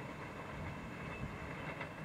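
Passenger train's coaches running away on the rails, a steady low rumble of wheels on track.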